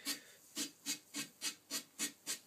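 Sandpaper rubbed over a leather cue tip in short, quick strokes, about three a second, shaping the tip round. The paper is 120 grit, which is too rough for the job and starts to tear and fluff up the leather.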